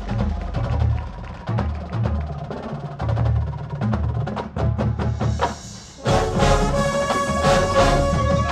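Drum and bugle corps music: a percussion passage of deep low pulses and dry clicking strokes, then about six seconds in the brass line comes in with loud sustained chords.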